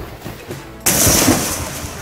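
A person sliding down a wet slip and slide into a cardboard box hung with black plastic bags. A sudden loud rush of hissing, splashing and plastic rustling starts about a second in and slowly fades.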